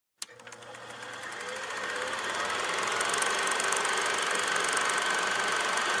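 A steady machine-like whirring hum with rapid ticking, fading in after a click near the start.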